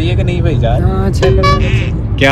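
Steady low rumble of a car's cabin noise, with men's voices over it.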